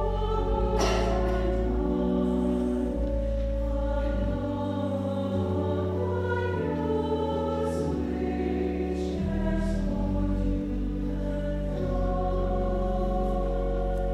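Mixed church choir singing an anthem in sustained chords, accompanied by organ with steady low bass notes beneath.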